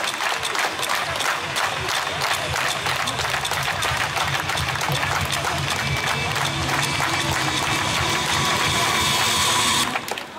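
Loud amplified music with a steady beat playing over an outdoor stage PA, mixed with crowd noise.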